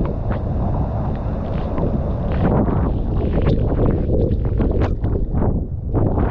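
Seljalandsfoss waterfall's steady roar, heard up close with heavy wind and spray buffeting the microphone.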